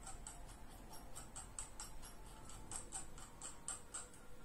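Computer mouse scroll wheel clicking steadily, about four or five notches a second, stopping at the end.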